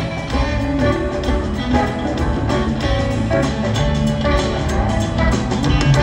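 Live rock band playing an instrumental jam: electric guitars, piano and drums, heard from the audience in an arena.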